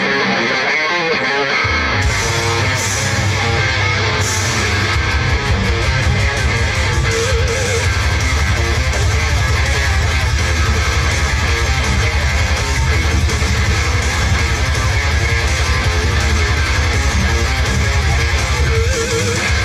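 Live electric guitar and bass guitar playing a rock piece, the bass coming in about two seconds in and carrying a steady low line.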